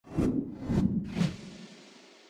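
Logo-reveal sound effect: three quick whooshes about half a second apart, the last trailing off in a long fading tail.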